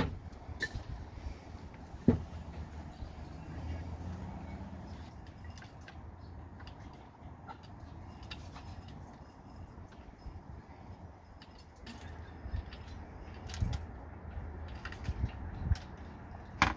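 Handling noises from measuring dried garlic and pouring it from a glass bowl through a funnel into a plastic bottle. There is a sharp knock about two seconds in, faint clicks and rustling, and several soft knocks near the end, all over a low steady rumble.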